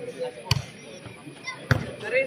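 A volleyball struck hard by hand twice during a rally, two sharp smacks a little over a second apart.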